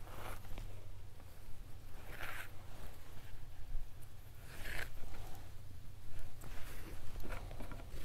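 Leather cord being pulled through punched holes in suede leather: faint rustling and sliding of leather on leather, with two short swishes, one a couple of seconds in and one near the middle.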